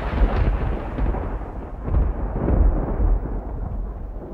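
Thunder sound effect: a long rolling rumble with heavy bass, swelling twice and slowly fading.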